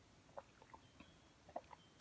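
Near silence with a few faint, short gulping sounds as a person swallows water from a glass.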